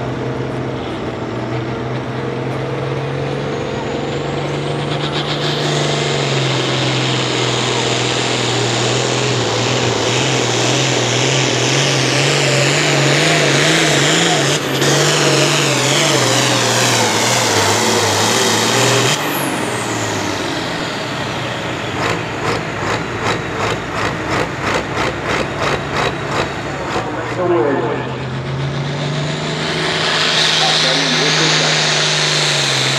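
International Harvester pulling tractor's turbocharged DT466 diesel engine building to full throttle under the load of the sled, with a high turbo whistle rising as it spools up. It runs loud until about two-thirds through, when the throttle comes off and the whistle falls away, and the engine then pulses at about two to three beats a second.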